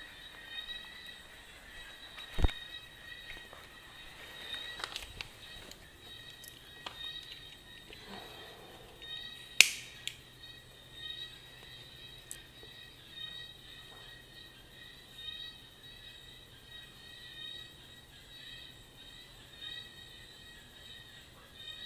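Small handling noises of a man working at a low table: a knock about two and a half seconds in and a sharp click near the middle, the loudest sound, with a few lighter clicks, over faint steady high-pitched tones.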